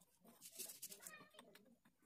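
Near silence: room tone, with a faint, high, wavering call about a second in.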